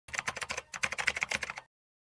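Rapid typing on a computer keyboard: a quick run of key clicks lasting about a second and a half, with a short break partway through, then stopping abruptly.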